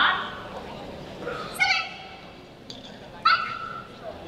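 Border collie giving short, high-pitched yelps, two clear cries about a second and a half apart, after a sharp, loud sound at the very start.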